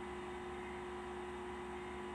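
Steady electrical hum with a constant pitch over a faint hiss, unchanging throughout.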